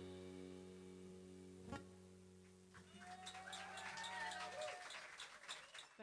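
The last chord of a Kawai MP7 stage piano fades away. From about three seconds in, scattered audience clapping and a cheer come in, then stop abruptly at the end.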